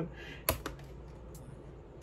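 A computer key pressed with one sharp click about half a second in, then a few much fainter clicks.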